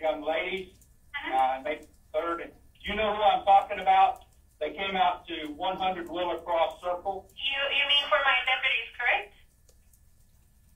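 Speech heard over a telephone line: a recorded phone call, the voices thin, with the top end cut off.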